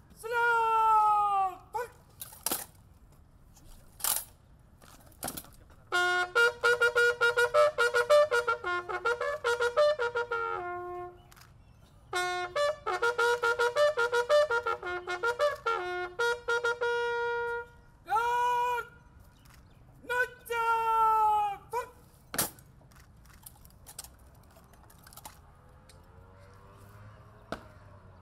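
A bugle call played by a police honour guard: two phrases of quick repeated notes that switch back and forth between two pitches. Before it comes a long shouted parade command, then a few sharp knocks of rifle drill. More short calls follow near the end.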